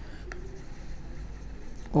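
Stylus scratching and lightly tapping on a tablet surface while a word is handwritten, quietly.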